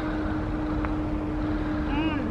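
A vehicle engine running steadily: a constant hum over a low rumble.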